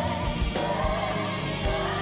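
Live gospel music: voices singing with a choir over a band, with a steady beat.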